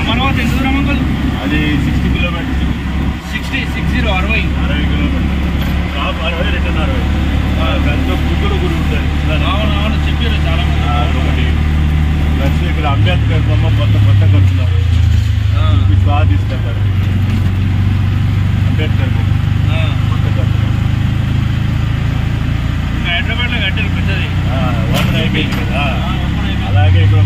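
Auto-rickshaw engine running steadily as the three-wheeler drives along, heard from inside the open cabin. Its low tone steps to a new pitch about 13 seconds in and again about 16 seconds in.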